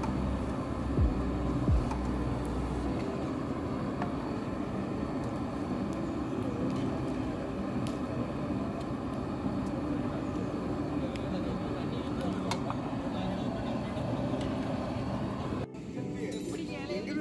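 Steady roar of an LPG gas burner under a large steel cooking pot, with a couple of low knocks in the first two seconds as liquid is poured in and the pot is stirred with a long ladle.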